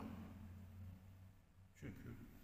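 Near silence: room tone with a faint low hum, and one brief soft sound near the end.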